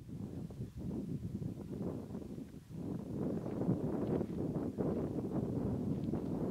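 Uneven low wind noise buffeting the microphone, dipping briefly around the middle.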